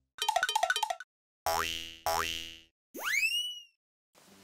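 A short cartoon-style sound-effect jingle for a logo card. It starts with a quick run of short plucked notes, then two short springy rising 'boing' tones, and ends with one long upward swoop in pitch.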